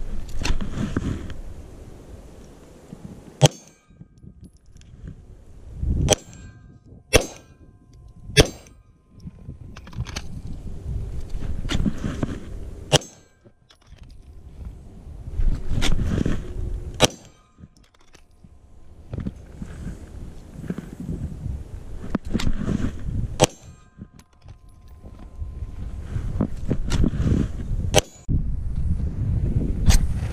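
A pistol fired a shot at a time at steel targets, about a dozen shots at uneven intervals, each crack answered by the ring of struck steel. Wind rumbles on the microphone between the shots.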